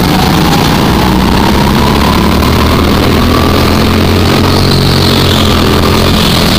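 Go-kart engine running at speed, its pitch climbing steadily as the kart accelerates out of a bend onto a straight.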